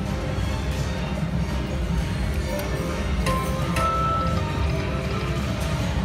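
Aristocrat Heart Throb Lightning Link slot machine spinning its reels to electronic game music, with two short beeping tones a little past halfway as the reels stop, over a steady low din of machines.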